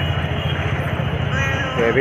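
Steady low rumble of street traffic and vehicle engines, with a man's voice starting to speak again near the end.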